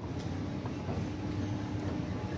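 Escalator running: a steady mechanical hum with a faint held tone and a few light clicks from the moving steps.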